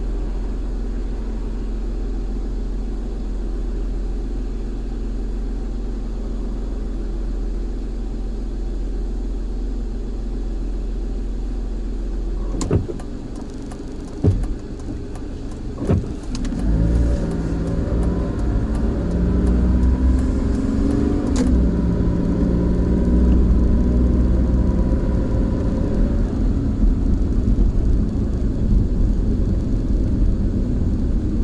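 Car engine heard from inside the cabin, idling steadily while stopped, then a few sharp knocks about thirteen to sixteen seconds in, after which the engine revs up with rising pitch as the car pulls away and accelerates.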